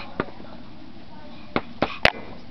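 Embroidery thread pulled through aida cross-stitch cloth: a few short sharp rasps, one just after the start and two close together near the end.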